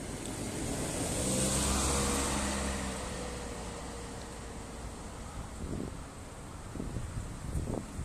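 A motor vehicle passing by: its sound swells over the first two seconds, then fades away with a slowly falling pitch.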